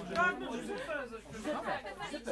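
Indistinct voices of several people talking over one another.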